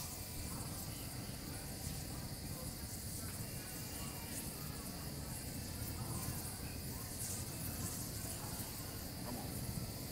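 Crickets chirping in a steady chorus, with a burning pile crackling faintly in small scattered pops.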